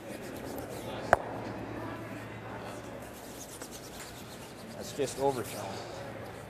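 Curling brooms scrubbing rapidly on the ice as a stone is swept. About a second in comes one sharp clack of granite curling stones colliding as the thrown stone makes a hit.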